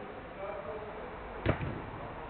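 A single sharp thud of a football being struck hard, about one and a half seconds in, with a short echo under the roof; distant players' voices faintly behind it.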